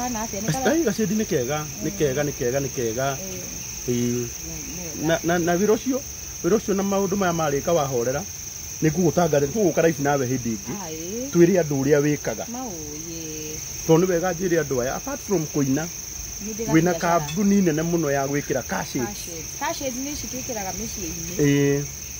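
People talking over a steady, high-pitched chorus of crickets that runs on without a break beneath the voices.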